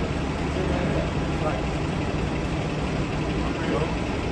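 Steady low engine hum of street traffic, like a vehicle idling close by, under a general city noise.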